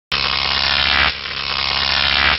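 Buzzing electric sound effect for a battery charging up, a harsh steady hum that starts at once and changes tone about a second in.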